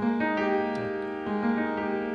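A keyboard with a piano tone holding a chord. A few more notes are struck in the first half second and again a little past the middle.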